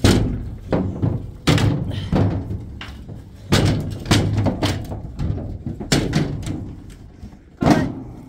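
Heavy, irregular thuds and knocks from a bull moving through a livestock trailer onto its ramp: hooves striking the trailer floor and its body bumping the metal gates, about ten knocks in all.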